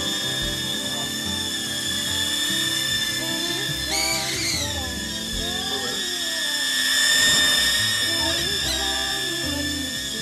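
Tiny toy quadcopter's motors and propellers whining steadily in flight, the pitch jumping up briefly about four seconds in as the throttle is pushed, then settling back. Background music plays underneath.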